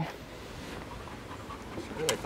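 Labrador retriever panting faintly.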